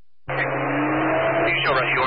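A two-way radio transmission keys up about a quarter second in, with steady static and hum. A siren sweeps down and up in pitch in the background from about halfway through, from the open mic of a responding fire apparatus.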